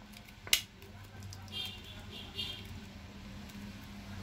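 Handling of a plastic cream tube over a steady low hum: one sharp click about half a second in, then faint rustling a second or so later.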